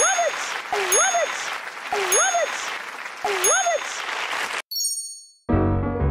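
A woman's shout over a cheering studio audience, repeated four times about a second apart like a loop, with a bright ding on each repeat. It cuts off suddenly near the end, followed by a short high chime and the start of a music sting.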